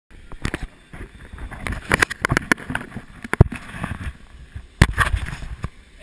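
Handling noise of a GoPro camera being held and fiddled with up close: irregular knocks, taps and rubbing on the housing, with two sharp louder knocks, one about halfway and one near the end.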